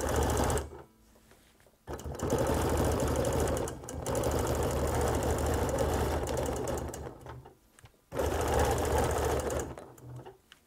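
Bernina Q20 sit-down longarm quilting machine stitching in free-motion runs of one to three seconds, stopping and restarting several times as the quilt is guided along the marked design.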